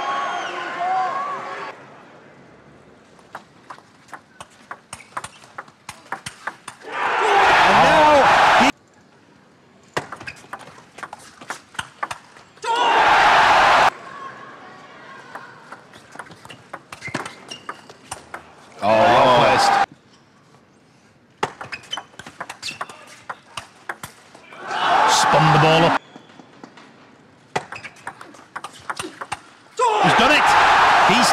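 Table tennis rallies: the celluloid ball clicks quickly off the bats and the table in runs of sharp ticks. Four loud bursts of crowd cheering and shouting break in after points, each cut off abruptly, and cheering at the start dies away after about two seconds.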